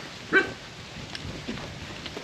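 A single short, sharp bark about a third of a second in.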